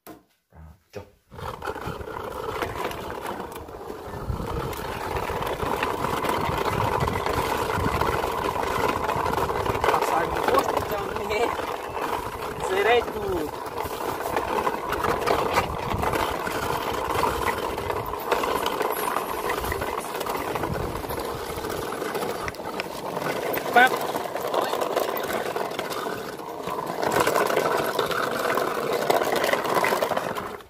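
A few short knocks, then a person's voice making a long, steady, wavering drone with the mouth, imitating a truck engine as a toy truck is driven along.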